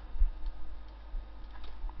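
Faint computer mouse clicks over a steady low electrical hum, with one low thump about a quarter second in.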